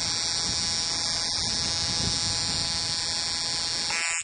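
Ignition coil tester firing an NGK resistor spark plug, a steady electric buzz of rapid repeated sparks across the plug gap.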